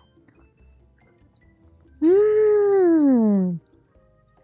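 A woman's long closed-mouth "mmm" of relish while chewing a bite of muffin. It starts about halfway through, rises a little, then slides down in pitch for about a second and a half.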